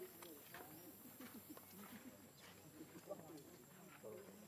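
Faint, distant voices of people talking in the background, very low in level, with a few light ticks.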